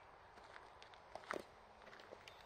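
Faint footsteps on gravel, a few soft steps with one louder step a little over a second in.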